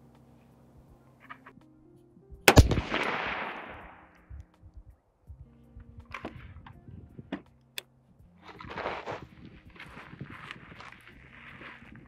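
A single shot from an AR-15-style 5.56 rifle about two and a half seconds in, a sharp report that rings out over about a second and a half. Quieter clicks and rustling follow.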